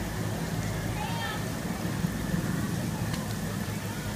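Steady hiss and patter of a park sprinkler's water spray falling on pavement, over a low, even rumble, with a faint brief voice about a second in.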